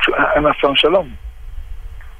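Speech only: a man talking for about the first second, over a narrow, radio-like line, then a short pause.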